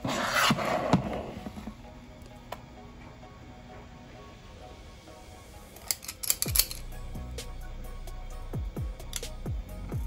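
Metal ice cream scoop scraping oat batter out of a plastic mixing bowl and clicking as it is worked, in bursts near the start and again about six seconds in, over soft background music.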